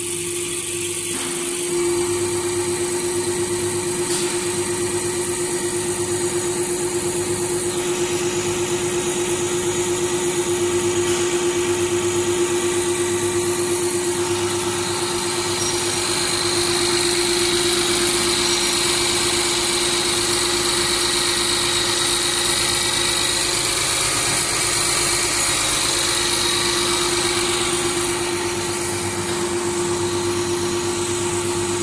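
Diesel pump test bench running a CAT 320D fuel pump at 500 rpm during a pressure test: a steady mechanical hum with a low, regular pulse a little more than once a second. It gets louder about two seconds in.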